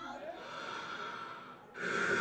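A break in the dance music: a faint noisy hush, then a loud, breathy hiss cuts in near the end.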